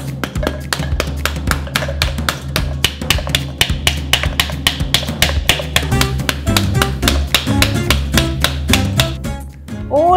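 Wooden spoon knocking rapidly on the back of a halved pomegranate, about five or six knocks a second, to shake the seeds loose into a stainless steel bowl. The knocking pauses briefly near the end, and background music plays under it.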